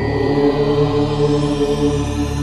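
Short devotional music sting: a chanted drone with steady held tones over a slowly pulsing low hum, with the ring of a bell fading out in its first half-second.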